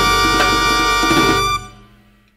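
Salsa band ending the song: a held chord with percussion hits that cuts off about one and a half seconds in and dies away.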